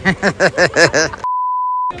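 A woman laughing in quick repeated bursts, cut off about halfway through by a steady single-pitch censor bleep that blanks out all other sound for about two-thirds of a second.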